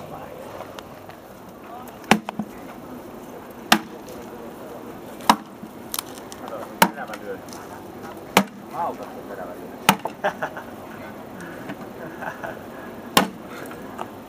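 Leveraxe splitting axe striking firewood logs: seven sharp chops, about one every second and a half, with a longer pause before the last.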